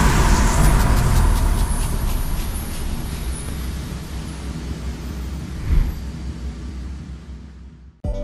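Cinematic logo-intro sound effect: a deep rumble with a fiery whoosh that slowly dies away, a second short hit about six seconds in, then a fade-out to nothing just before the end.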